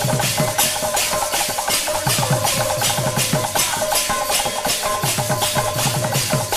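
A Sambalpuri kirtan band playing an instrumental passage between sung lines: a melody on steady notes over an even percussion beat of about three strokes a second, with low drum strokes that fall in pitch.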